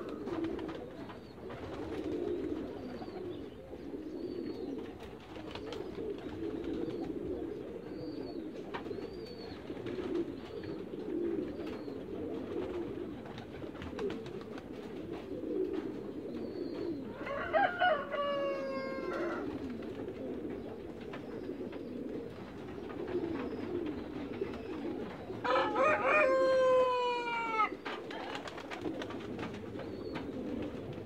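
Farmyard birds calling: a continuous low cooing runs throughout, broken twice by a longer, louder call that falls in pitch, about 17 and 26 seconds in.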